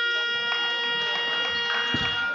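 A steady electronic tone sounding several pitches at once, held over the hall's background noise and cutting off abruptly just after.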